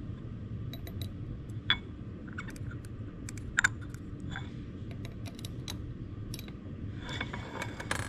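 Light clicks and taps of a metal probe against glass labware as potato pieces are lifted from a glass dish and dropped into test tubes, over a steady low hum. The sharpest tap comes about three and a half seconds in.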